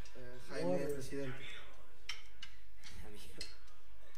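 A man's voice speaking a few short phrases while the band is not playing, with several sharp taps or clicks in between.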